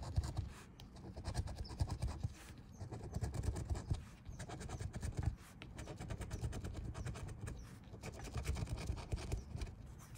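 Scratch-off lottery ticket being scratched, its coating scraped away in quick repeated strokes with a few short pauses.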